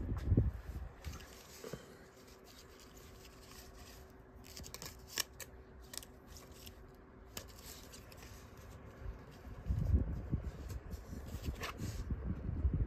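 Rigid plastic toploader card holders clicking and scraping against each other as a stack of trading cards is handled, with low handling bumps near the start and about ten seconds in.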